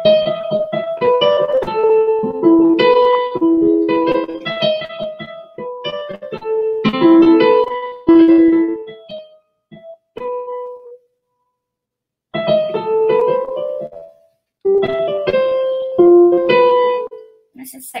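Electronic keyboard played in a simple melody of single notes over lower notes. It stops for about a second and a half just past the middle, then starts again.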